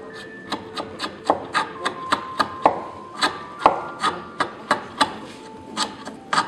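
Hand-pushed carving chisel paring across the grain of a softwood carving, each cut a short crisp slice as a chip comes away, about three cuts a second with a brief pause midway.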